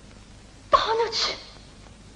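A Yueju opera actress's short vocal outcry, with no words, beginning sharply about three-quarters of a second in and lasting under a second.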